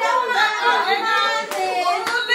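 Several people's voices talking over one another, with a single short sharp click or clap about one and a half seconds in.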